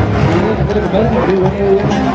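Band music playing loudly, a wavering melody line over a low pulsing beat, with voices mixed in.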